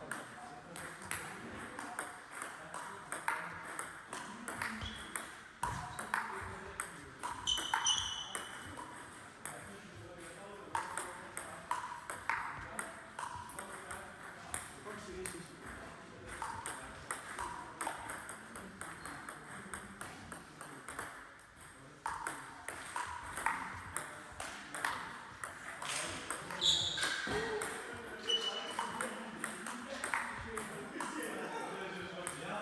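Table tennis rally: a plastic ball hit back and forth between bats, one faced with long-pimpled rubber, and bouncing on the table. It makes a run of sharp clicks a fraction of a second apart, with short breaks between points.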